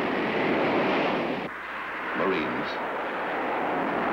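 Jet aircraft taking off: a loud, rushing engine noise that drops off sharply about a second and a half in, then builds again.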